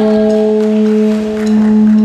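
A single held note from an amplified instrument in a live band, steady and sustained with overtones, swelling slightly near the end.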